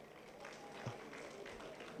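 Faint public-address room tone in a pause in a man's speech, with one soft low bump just before a second in.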